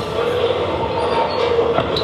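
A tracked bulldozer demolishing a house: a steady, dense heavy-machine noise.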